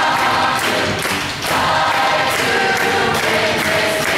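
A large school wind band playing a fight song: brass and woodwinds in loud, sustained chords, with a short break between phrases about one and a half seconds in.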